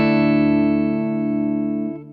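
An Ibanez RG631ALF electric guitar on its Fishman Fluence Modern neck pickup, in the passive voicing, with a struck chord left ringing. The chord sustains and slowly dies away, fading toward the end.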